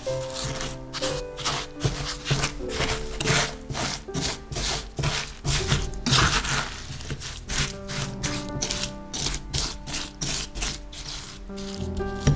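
A spatula stirring granulated sugar through sliced baby ginger in a metal pan: repeated gritty scraping and crunching strokes, about three a second, over soft piano music.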